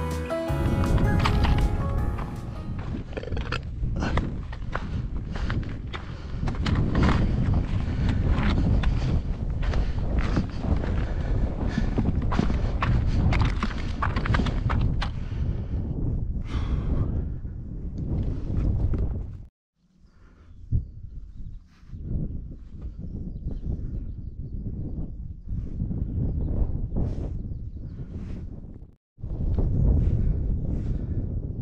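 Footsteps of a walker on a stone and gravel moorland path, a steady stride of crunching steps, with wind buffeting the microphone. Acoustic guitar music fades out in the first couple of seconds, and the sound cuts out briefly twice near the end.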